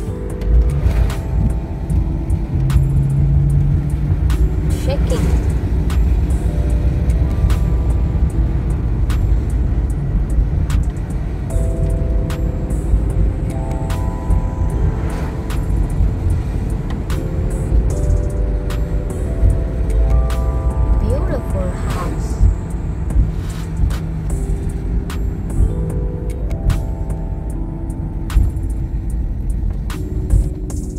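A car driving, with a steady low road and engine rumble. Over it plays background music of short runs of notes that step upward, repeated every six or seven seconds.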